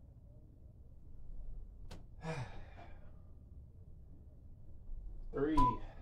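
A man's voiced exhale while squatting with kettlebells, with a single sharp click just before it about two seconds in. Near the end a short electronic beep from an interval timer sounds under the spoken countdown.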